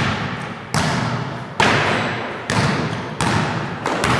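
Basketball dribbled on a hardwood gym floor: about five bounces, a little under a second apart, each ringing on with a long echo in the hall.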